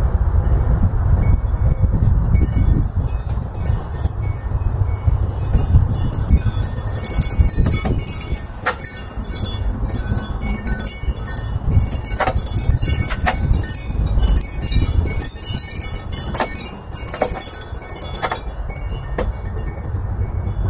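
Wind chimes tinkling irregularly in a breeze, with a number of sharper clinks in the second half, over a steady low rumble of wind on the microphone.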